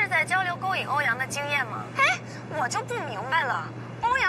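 Speech: a voice talking throughout, over a steady low hum that cuts off suddenly at the end.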